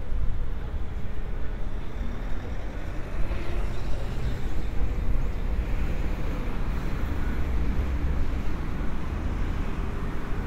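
Steady road traffic on a multi-lane city street: cars, a box truck and a taxi driving past, a continuous low hum of engines and tyres with a vehicle swelling past a few seconds in.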